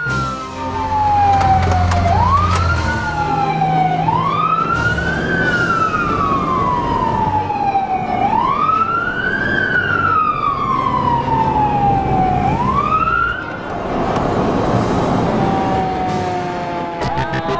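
Emergency vehicle siren wailing, each cycle a quick rise and a slower fall of about four seconds, over a low rumble. Near the end the wail stops and a rushing noise takes over.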